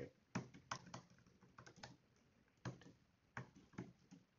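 Faint typing on a computer keyboard: a quick run of irregular keystrokes in the first two seconds, then a few single key presses spaced out toward the end.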